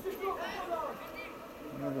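Voices shouting and calling out, with a man's voice saying "Nie" near the end.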